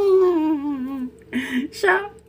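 A person's long wordless vocal sound, a hum falling steadily in pitch for about a second, then a brief second vocal sound and the start of a word near the end.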